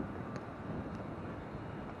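Steady outdoor wind noise on the camera's microphone, with a faint tap about half a second in.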